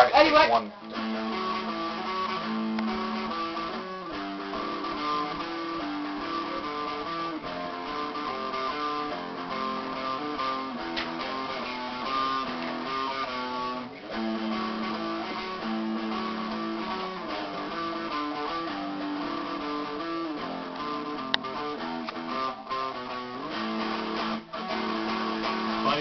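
A guitar playing a melodic tune, the same phrase coming round again about every ten to twelve seconds.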